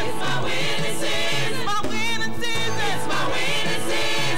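A gospel praise team of several singers sings together into microphones over a steady-beat band accompaniment.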